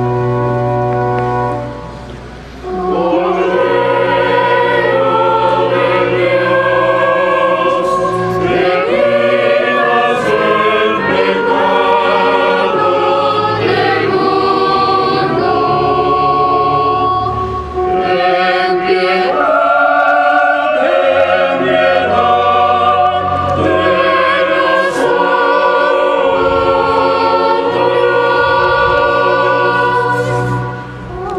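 Church choir singing a liturgical chant in long, held phrases over a steady low accompaniment. There is a brief pause about two seconds in before the full singing starts.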